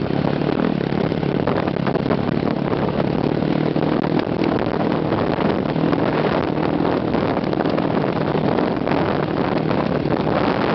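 Motocross dirt bike engine running steadily under throttle as the bike rides along a dirt track, heard from the passenger seat.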